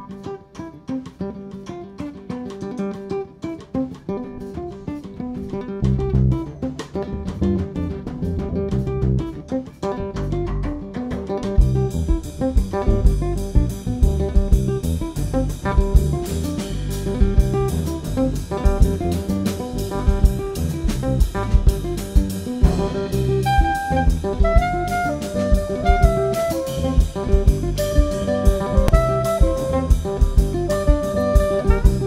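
A small instrumental jazz band plays live. Guitar and bass open the tune quietly. The drum kit comes in about six seconds in, cymbals join from about twelve seconds, and a wind instrument takes up the melody in the last few seconds.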